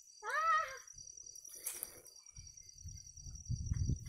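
A single short high-pitched call that rises and then falls in pitch, lasting about half a second near the start. Under it runs a faint, steady, high pulsing whine, and a low rumble builds toward the end.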